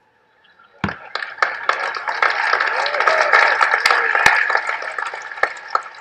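Large audience applauding, starting about a second in after a brief silence and dying down toward the end.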